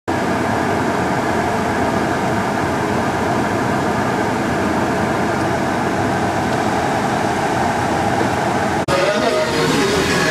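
Steady road-traffic noise from slow-moving cars on a wet road. Just before the end it cuts off suddenly and gives way to voices.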